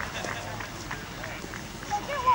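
Faint voices of lacrosse players and sideline spectators calling out on an open field, with a few faint clicks.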